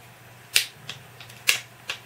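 Fingernails and fingers working at a plastic card protector, making sharp clicks: two loud ones about a second apart, a softer one near the end and a few faint ticks between.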